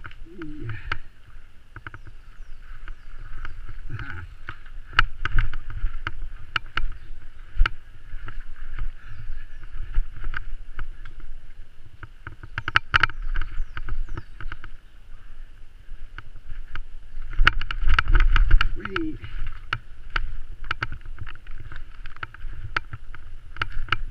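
Mountain bike ridden fast down rough forest singletrack, heard from an on-board camera: an irregular clatter of knocks and rattles as the bike hits roots and bumps, over a rumble of wind on the microphone. The rumble is heaviest about three-quarters of the way through.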